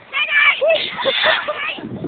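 High-pitched squeals and laughter from several people, in short bursts.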